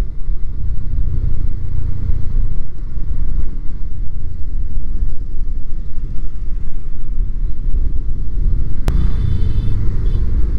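Triumph Speed 400 single-cylinder motorcycle cruising at steady road speed, its engine buried under a loud, steady low rumble of wind on the microphone. A single sharp click comes near the end, with a faint high tone after it.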